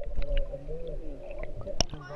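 Muffled sound picked up by an action camera held underwater in shallow sea water: low, wavering tones of voices from above the surface, dulled by the water. There is a single sharp click near the end.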